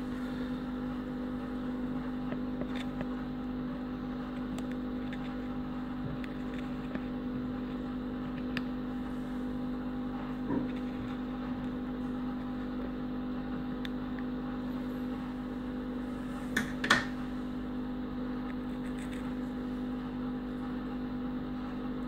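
A steady low mechanical hum with a few faint clicks, and a brief louder pair of snips about three quarters of the way through as nail scissors cut the leathery shell of a pipped ball python egg.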